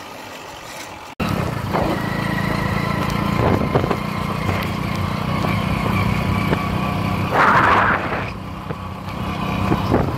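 Motorbike engine running steadily while riding along a road, a low even hum that comes in sharply about a second in after quieter wind noise. A brief louder noise rises over it about seven and a half seconds in.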